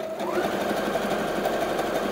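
Brother PS300T computerized sewing machine sewing a dense zigzag satin stitch: its motor whine rises as it comes up to speed just after the start, then it runs steadily with rapid needle strokes.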